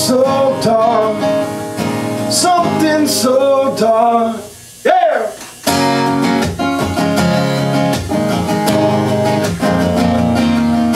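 A man singing to his own strummed acoustic guitar. Just before halfway the music drops out briefly with one sliding vocal note, then the guitar strumming comes back in.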